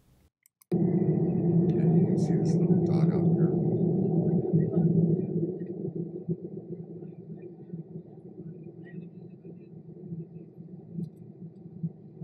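Airliner cabin noise in flight, heard from a window seat: a steady low rumble of engines and airflow, starting under a second in and growing quieter about halfway through.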